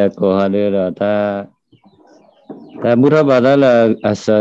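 A man's voice in long, drawn-out syllables: three held sounds in the first second and a half, then after a pause a longer stretch that wavers up and down in pitch.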